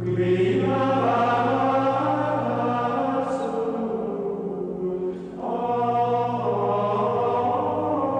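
Choir singing a chant in long held notes, in two phrases with a short break about five seconds in.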